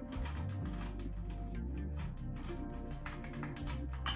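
Quiet background music with a steady bass line, over irregular light clicks and taps as the metal tripod wig stand's pole and clip are handled and fitted together.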